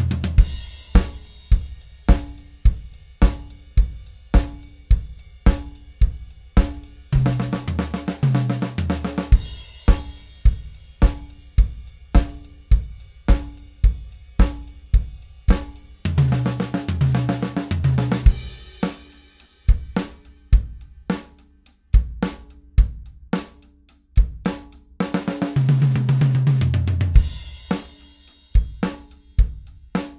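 Drum kit playing basic rock grooves at a brisk tempo: bass drum and snare on a steady beat under cymbal eighth notes. Three times, about nine seconds apart, the groove breaks into a two-second sixteenth-note fill moving around the drums.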